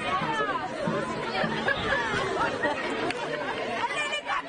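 Several high women's voices shouting and calling over one another on the pitch during open play in a women's football match.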